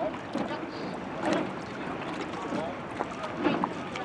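Rowing shell under way, with water rushing past the hull and louder swells of oar splash and oarlock noise about every two seconds as the crew takes strokes, under wind on the microphone.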